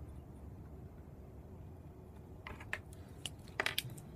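A few small clicks and scrapes from a pen and a steel rule being handled on a cutting mat, clustered in the second half, over a faint low rumble.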